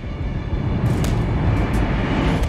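Film soundtrack of a fight: music over a dense low rumble of battle sound effects, with a few sharp hits about a second in and again near the end.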